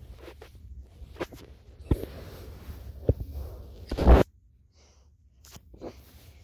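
Blankets rustling and a phone being handled close to its microphone while it is held under the covers, with several sharp knocks and a louder bump about four seconds in, after which it goes almost quiet for about a second.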